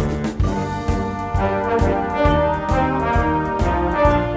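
Concert band playing a brass-led passage, with trombones and trumpets over a low bass line and a steady beat of percussion hits.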